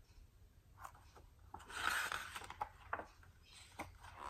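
A picture book's page being turned: a soft paper swish about halfway through, with a few faint ticks of handling around it.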